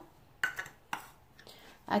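A short metallic clink about half a second in and a softer click about a second in, as a metal balloon whisk is picked up.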